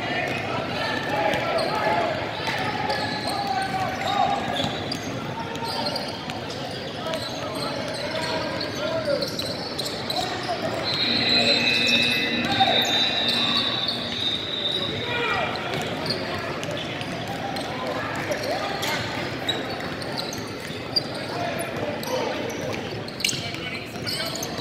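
A basketball bouncing on a hardwood gym court during play, with voices echoing around a large hall. A steady high tone is held for about four seconds midway.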